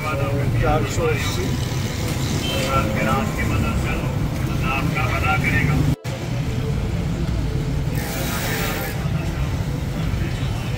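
Busy street ambience: a steady low rumble of traffic with indistinct voices chattering around it. The sound breaks off briefly at a cut about six seconds in.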